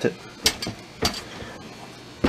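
Whirlpool dishwasher door being handled and pushed shut, with two sharp knocks about half a second apart, the first about half a second in. The door is being checked for rubbing on the side.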